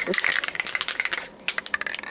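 An aerosol can of Loctite spray adhesive being shaken hard before spraying: a rapid clatter of clicks that thins to a few separate clicks near the end.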